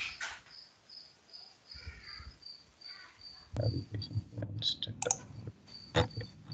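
Computer mouse and keyboard clicks, scattered through the second half, over a low rumble and a faint steady high pulsing tone.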